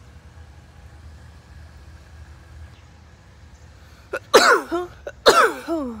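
A woman sneezing twice, about a second apart, near the end; each is a sudden loud burst whose pitch slides down. Before the sneezes there is only a faint low background rumble.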